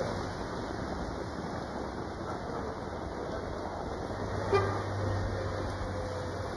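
Steady hiss of traffic on a wet street, with a short car horn toot about four and a half seconds in.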